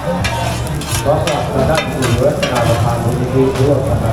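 Two metal spatulas scraping and clanking on a large flat griddle pan as hoi tod, Thai fried mussel omelette, sizzles in oil. There are several sharp scrapes in the first couple of seconds.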